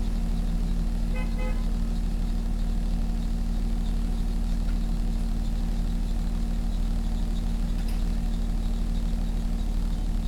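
Car engine idling steadily, heard from inside the cabin as a low, even hum. About a second in, a short double beep sounds, like a horn toot.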